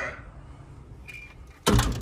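A sudden loud thump about a second and a half in, against a low steady hum.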